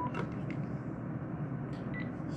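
Panasonic cordless phone handset giving a short key-press beep right at the start and another brief, higher beep near the end, with a few faint clicks of the handset being handled in between.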